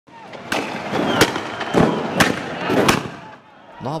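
A run of about five loud, sharp bangs over two and a half seconds, over a noisy street haze, from a clash between riot police and protesters with tear-gas smoke in the air. A man's voice starts near the end.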